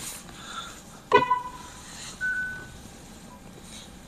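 Two short beeping tones. About a second in a loud, sharp tone rings on briefly, and about two seconds in a higher, steady tone lasts about half a second. Two faint short blips follow near the end.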